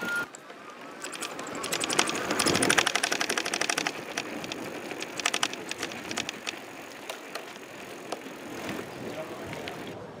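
A fast, even run of clacks, about ten a second, that swells for a couple of seconds and fades, then gives way to scattered clicks over a faint outdoor hum.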